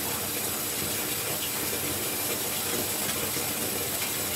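Bath tap running steadily into a filling bathtub: an even, constant rushing hiss of water.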